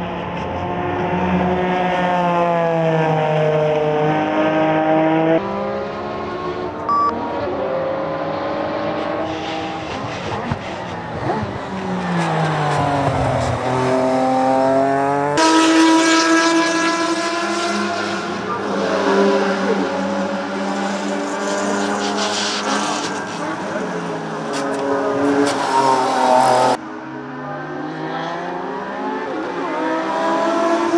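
Naturally aspirated Porsche 987 Cayman race car's flat-six running hard on a flying lap, its pitch climbing through the gears and dropping again on each downshift, several times over. The sound jumps abruptly about five, fifteen and twenty-seven seconds in.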